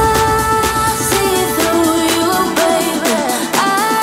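Background pop music with a steady beat and a melody that slides between held notes.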